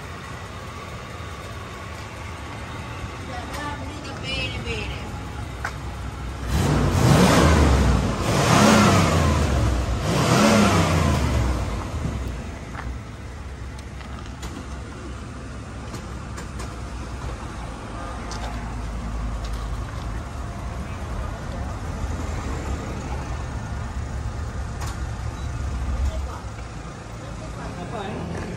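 1991 Cadillac Fleetwood's V8 idling, then revved three times in quick succession before dropping back to a steady idle. The exhaust has just been remounted at the right clearance and no longer touches or vibrates against the body.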